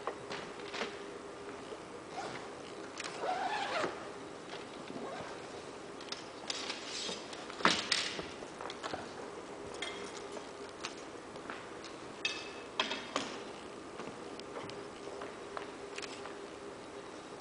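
A portable pop-up banner display being unpacked from its soft carry bag: rustling of the bag and fabric with scattered clicks and knocks from the folding frame, the sharpest click about halfway through. A faint steady hum runs underneath.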